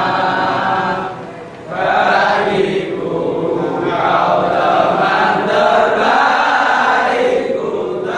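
A large group of young men chanting together in unison, with a brief pause about a second and a half in before they carry on.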